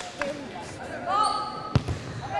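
A volleyball smacks hard near the end, with a fainter hit just after the start. Between them a player gives a drawn-out shouted call.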